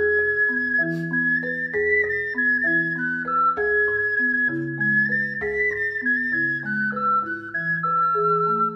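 Ocarina and marimba duet. The ocarina holds a high melody of long notes above the marimba's four-mallet accompaniment of changing chords in the low and middle register.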